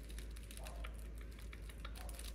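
Rapid, irregular light clicks and scratches of puppies' claws on a quilted fabric mat as five-week-old puppies scramble and climb over each other.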